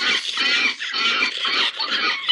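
Loud, high-pitched squealing in a string of short bursts, one after another.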